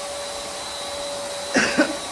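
Steady machine hum with a constant mid-pitched whine underneath. A person coughs briefly near the end.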